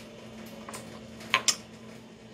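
Plastic cups being handled and set down on a granite countertop: a light knock, then two sharp clicks in quick succession about a second and a half in, over a faint steady hum.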